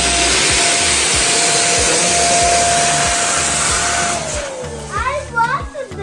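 A small electric motor with a rush of air runs steadily with a high whine, then switches off about four seconds in and winds down with falling pitch. Background music with a steady beat runs underneath, and children's voices come in near the end.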